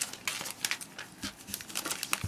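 A thin clear plastic bag crinkling and rustling as it is handled, an irregular run of small crackles.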